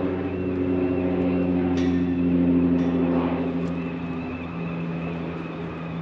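A motor vehicle's engine running with a steady low hum, fading away over the last couple of seconds.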